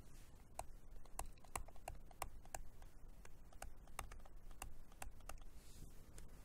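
Faint, irregular clicks and taps of a stylus tip on a graphics tablet during handwriting, about three a second.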